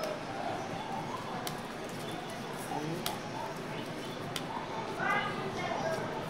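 Indistinct voices of people talking in the background, with three sharp clicks spaced about a second and a half apart.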